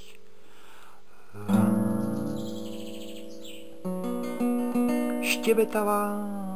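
Acoustic guitar chords strummed and left to ring out: one about a second and a half in, another near four seconds. A brief bit of singing voice comes near the end.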